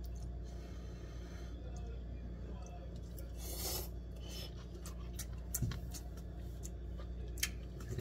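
A person eating instant noodles from a cup, with a short slurp or sip of broth from the cup about three and a half seconds in and a few faint clicks of eating, over a steady low hum.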